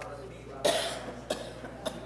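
A single cough about half a second in, followed by two short clicks, in a room just before a spoken address begins.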